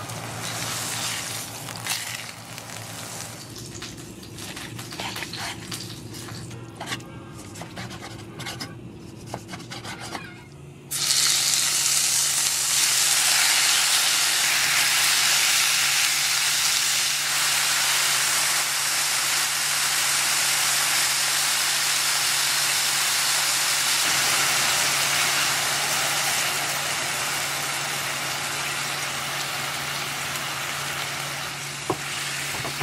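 Steak and sliced mushrooms frying in oil in a frying pan, turned with tongs. A light crackle with scattered clicks gives way, about eleven seconds in, to a sudden loud steady sizzle that lasts to the end, over a low steady hum.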